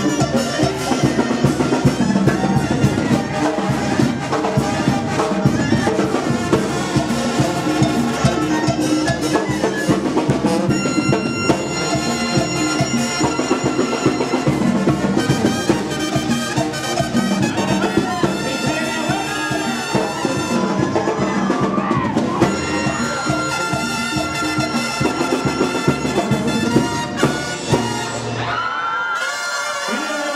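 Banda sinaloense music: brass and drums playing with a steady beat, no words picked out. The bass drops out about a second before the end.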